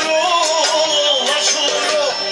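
Loud dance music: a singer's wavering, ornamented melody over a steady beat, played for dancing.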